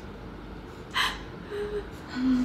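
A person's sharp gasp about a second in, then a brief low vocal sound near the end.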